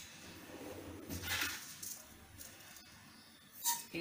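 Faint handling sounds of a steel spoon scooping sugar from a container: a brief rustle a little over a second in and a short clink near the end as a spoonful is measured out.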